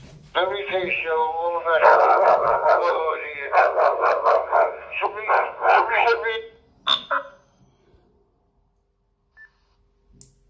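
A man's voice through the small speaker of an ICOM ID-52 D-STAR handheld receiving a digital-voice transmission, thin and narrow-sounding, for about six and a half seconds, followed by a short click.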